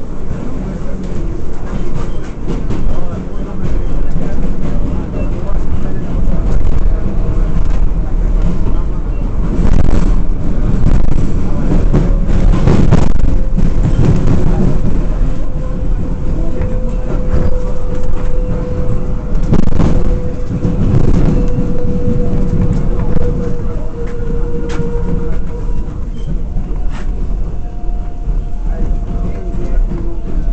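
R188 subway car in motion, heard from inside the car: a continuous rumble of wheels on rail with occasional sharp knocks. A motor whine holds a steady pitch through the middle, and a higher whine comes in near the end.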